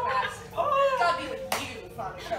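Voices speaking or calling out on stage, then a single sharp impact about one and a half seconds in.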